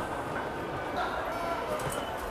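Railway station concourse ambience: steady background noise with faint, distant voices.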